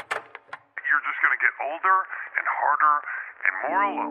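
A spoken voice sample in a lo-fi track, thin and band-limited like a voice over a phone or radio, starting right after silence. A sustained chord comes in near the end.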